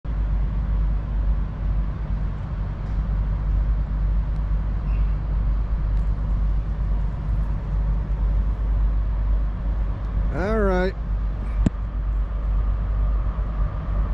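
Steady low rumble of outdoor noise, with a short voice sound about ten and a half seconds in and a single sharp click just before twelve seconds.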